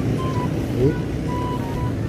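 Steady low rumble of city street traffic, with a faint tune of short high notes over it and a brief rising tone a little under a second in.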